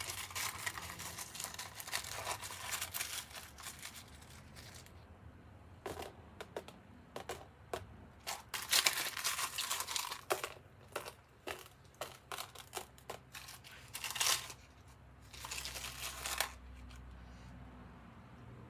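Hands rustling and crinkling in irregular bursts while picking out broken glass crystal pieces and setting them on a resin-coated canvas, with small clicks of glass in between.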